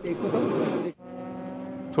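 About a second of noisy pit-lane background, then an abrupt cut to race car engines running at a steady pitch as they lap the circuit.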